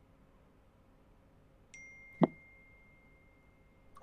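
Near silence broken once, about two seconds in, by a single short pop. A faint, steady, high tone starts just before the pop and runs on.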